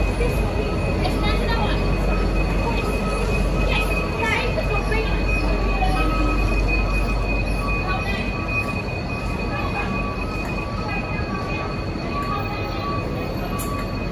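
V/Line locomotive-hauled passenger carriages rolling past as the train arrives and brakes, with wheel and bogie rumble under a steady high squeal. The sound grows gradually quieter as the carriages slow.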